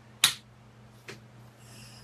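Two sharp clicks, the first loud about a quarter second in and a fainter one about a second in, over a steady low hum.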